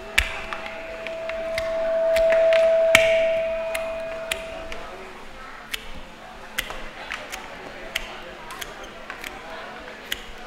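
Scattered sharp clicks and taps of flower stems being handled and bound into a hand-tied bouquet. Over the first five seconds a steady single ringing tone swells, is loudest about two and a half seconds in, and fades out.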